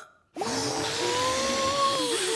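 Cartoon sound effect of a head being blown up with air: a steady hiss with a held, slightly wavering whine over it, starting about a third of a second in.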